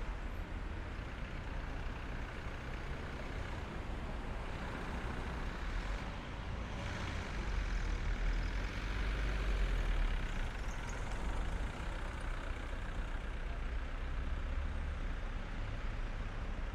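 Road traffic: a steady low rumble of passing vehicles, growing louder for a few seconds about halfway through as a vehicle goes by.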